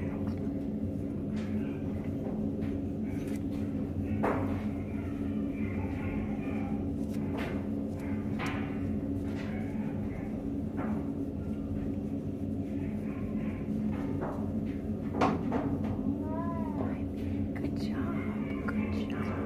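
A steady low hum throughout, with a few soft knocks, and a single short cat meow that rises and falls in pitch near the end.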